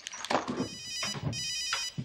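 Mobile phone ringing with an electronic ringtone, its melody coming in short repeated phrases. A brief noise breaks in about half a second in.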